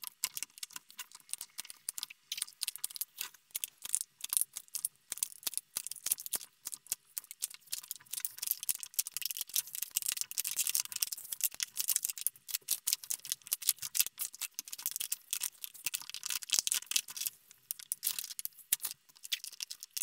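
Old acetate polarizer film being peeled slowly off an LCD's glass, its strong adhesive letting go in a dense, irregular run of fine crackles.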